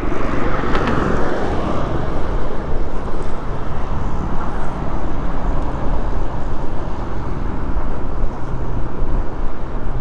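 Wind rumble on the microphone and highway traffic noise, with a vehicle going by about a second in.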